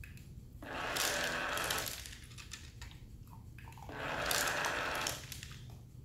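Treat & Train remote treat dispenser running its motor twice, each a rattling whir of about a second and a half as kibble is tumbled out into its dish.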